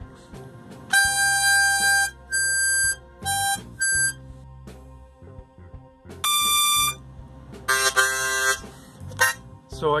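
Diatonic harmonica played as a series of short, separately held notes, about seven in all, with a lower, fuller-sounding note or chord near the end. The notes are being played to check the tuning of freshly retuned reeds.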